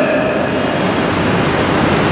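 A steady rushing noise with no pitch or rhythm, filling the pause between spoken phrases.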